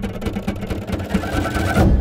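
Trailer music build: a fast, mechanical-sounding rattle of ticks, about a dozen a second, over a low held tone. It swells to its loudest just before the end and then cuts off abruptly.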